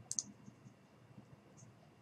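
Faint computer mouse clicks: a light double click about a fifth of a second in, then a few fainter ticks.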